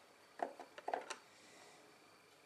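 A few small clicks and taps from fingers handling a tiny model lamp and its wire, bunched together about half a second to a second in.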